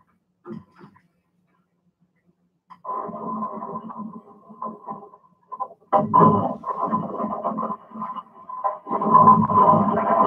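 Soundtrack of GoPro footage of a canoe among ice floes, played over a room's loudspeakers. After near silence it starts as a dense, irregular noise about three seconds in and grows louder about six seconds in.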